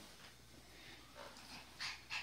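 Mostly quiet, with a short, faint breathy sound from a small pinscher dog near the end.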